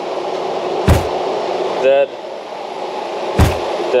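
Steady machinery noise running throughout, broken by two sharp knocks about two and a half seconds apart, one about a second in and one near the end.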